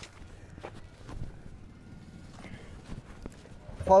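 Faint, irregular knocks and footsteps of two men handling and setting down a potted bonsai stock in a grow bag. A man starts speaking right at the end.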